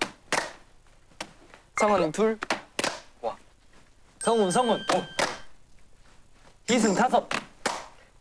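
Young men's voices calling out in a Korean chanting and counting game, in three short bursts with quiet gaps between them. Short thuds fall between the bursts, and a bright ringing sound-effect tone sits over the middle one.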